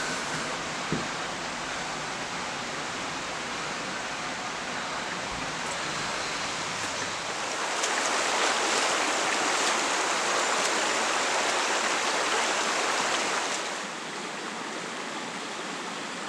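Shallow, rocky stream running over stones, a steady rush of water. It grows louder for several seconds past the middle of the clip, then drops back near the end.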